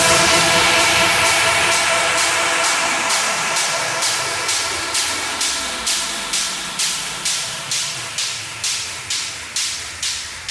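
Breakdown in an electronic dance track: the kick and bass drop out, leaving a white-noise hiss over held synth chords that slowly fades. From about a third of the way in, rhythmic swells of noise pulse a little over twice a second.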